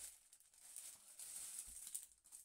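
Faint, intermittent crinkling of clear plastic wrapping being handled.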